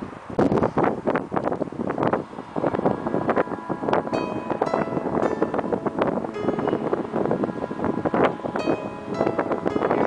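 Background music with a beat and short pitched notes, over wind buffeting the microphone.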